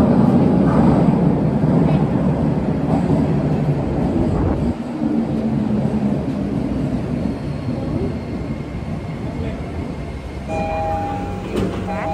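Subway train pulling into the platform: a loud low rumble that drops off about five seconds in as the train slows, then runs on more quietly as it comes to a stop. Near the end a few steady chime tones sound as the doors open.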